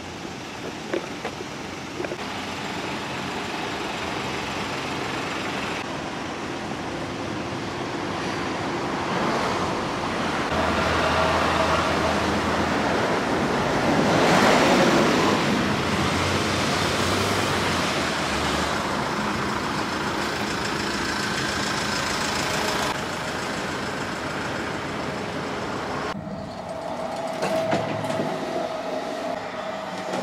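Outdoor street noise of passing vehicles, a steady rushing that swells to its loudest about halfway through as one goes by, then drops off abruptly near the end.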